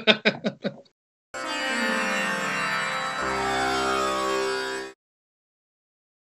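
Short music sting for a channel ident, about three and a half seconds long: a full chord with a sweep falling in pitch across it, a low bass note coming in about halfway, then cutting off suddenly.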